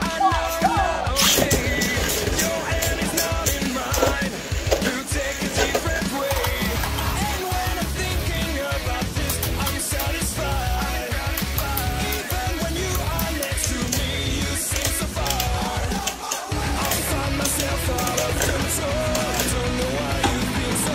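Background music over Beyblade spinning tops whirring and scraping across a plastic stadium floor, with many sharp clicks as the tops strike each other and the stadium wall.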